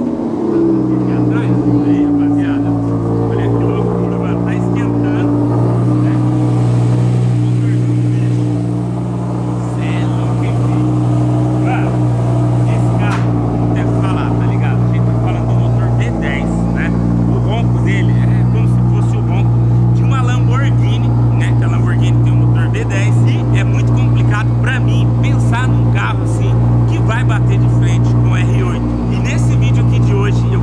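Audi R8's V10 engine just after a cold start: the revs fall from the start-up flare over the first couple of seconds, then hold a steady raised cold idle.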